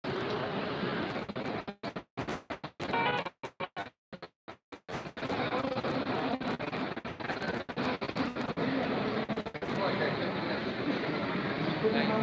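Murmur of voices and chanted recitation echoing through a large shrine hall, with the sound cutting out completely again and again for split seconds between about two and five seconds in, as a glitching live-stream feed does.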